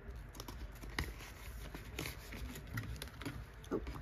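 Light rustling and scattered soft clicks of paper banknotes and a binder's clear plastic cash pocket being handled.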